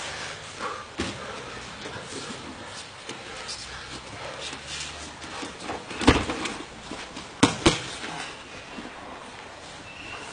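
Grappling on training mats: bodies and hands hitting the mat in a few sharp slaps, the loudest about six seconds in and then two more in quick succession a second later.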